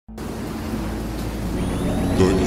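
Cinematic intro sound effect: a deep rumbling drone that swells gradually, with thin high whistling tones gliding in about one and a half seconds in.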